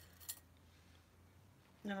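A few faint, light clinks of metal pins against a small glass pot as a pin is picked out, within the first half second.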